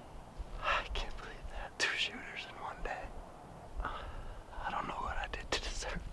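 A man whispering in short phrases, close to the microphone.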